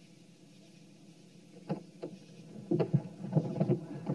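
A run of knocks and thumps from people scrambling hurriedly into a car, starting with two sharp knocks about two seconds in and growing busier near the end, over a low steady hum.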